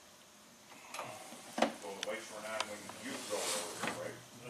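A few sharp clicks and rustles from hands tugging on a truck's wheel-speed-sensor wiring harness during a continuity tug test. A low, indistinct voice runs under them from about two seconds in.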